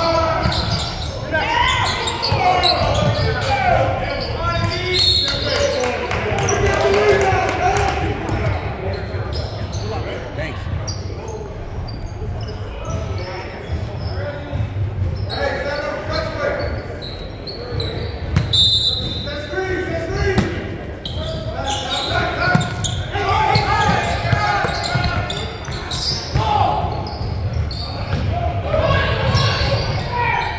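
Live basketball game sound in a large gymnasium: a basketball bouncing on the hardwood floor amid players' and spectators' voices and shouts, all echoing in the hall.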